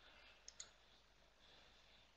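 Near silence, with two faint computer mouse clicks about half a second in.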